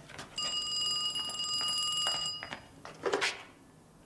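Wall telephone's bell ringing once for about two seconds with a fast trill. About three seconds in there is a short clatter as the handset is lifted off the hook.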